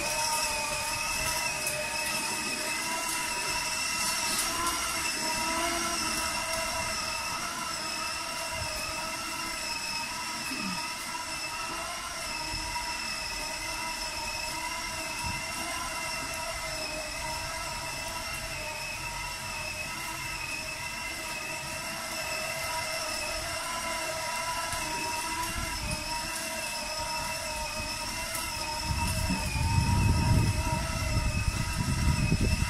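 Child's battery-powered ride-on toy motorcycle running with a steady high whine of several pitches that wavers slightly, with a louder low rumble rising near the end.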